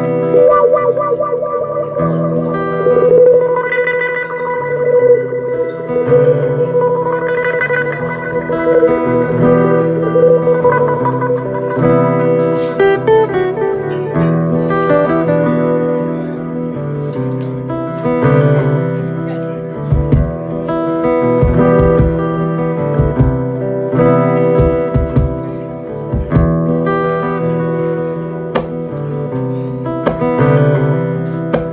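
Acoustic guitar played live in an instrumental passage: long wavering high notes over low sustained chords in the first ten seconds, then busier picking, with a few low thumps around twenty seconds in.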